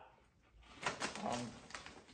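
Faint crunching of puffed corn cheese balls being chewed: a few soft crackles starting about a second in, with a short spoken 'um' among them.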